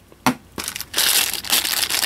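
Clear plastic bag of spare earbud tips crinkling as it is handled, starting about a second in, after a single short click.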